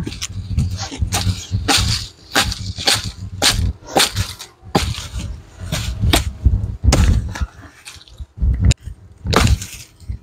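Dry palm fronds and a dried palm leaf sheath crackling and snapping as they are pulled through the undergrowth and handled, an irregular run of sharp cracks about two a second, the loudest near the end.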